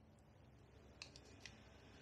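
Near silence: faint room tone with two small plastic clicks about a second in and half a second later, from hands handling the sealant bottle and its hose.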